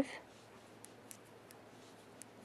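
Faint light clicks of metal knitting needles touching as stitches are knit, four small ticks spread over about two seconds.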